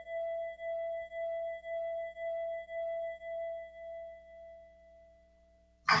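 Soundtrack music from a TV soap opera: a single held musical tone that pulses about twice a second and fades away over the last couple of seconds. A woman's voice begins speaking right at the end.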